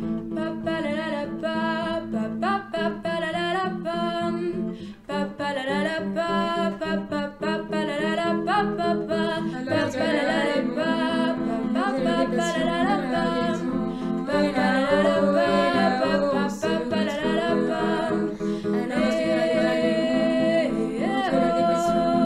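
A song: a voice singing a melody with no words picked up, over guitar accompaniment.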